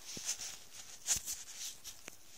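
Handling noise from a camera being moved and set down at table level: faint rustling with a few light knocks, the sharpest a little past the middle.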